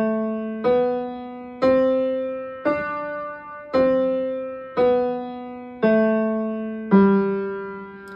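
Upright piano playing the G major five-finger scale slowly with the left hand, one note about every second, climbing to D and stepping back down to G. Each note is struck and rings out, fading before the next.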